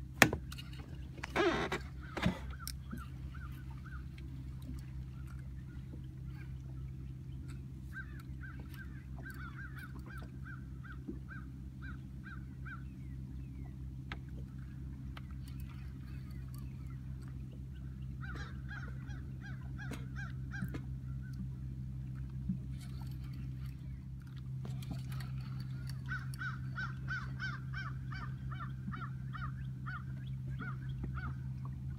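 Geese honking in repeated series of short calls, about two a second, in three bouts, over a steady low engine hum from the boat. A sharp knock and a short loud burst come right at the start.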